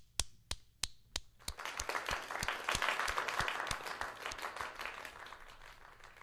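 Hand clapping: a few separate claps about three a second, then from about a second and a half in, fuller applause from a group builds and fades away near the end.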